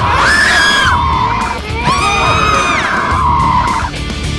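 Two high-pitched screams, each lasting about a second, over background music.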